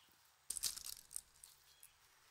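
Brief dry rustling and crinkling about half a second in, lasting under a second, followed by a few faint crackles.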